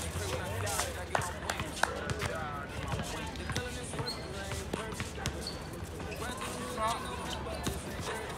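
Basketball bouncing and thudding on an outdoor hard court during a pickup game, with a few sharp bounces standing out, under players' voices calling on court.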